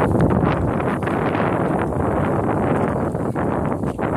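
Wind buffeting the microphone in a loud, steady rush, over the engine of a Cessna 172 light aircraft running as the plane moves away down the grass runway.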